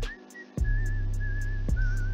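Background music: a whistled melody with a slight waver, over a steady bass line and a regular light beat. The bass drops out for about half a second near the start, then returns.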